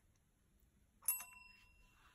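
A chrome desk service bell struck once about a second in by a kitten's paw on the plunger, then ringing on and slowly fading. The kitten is ringing it to ask for a treat.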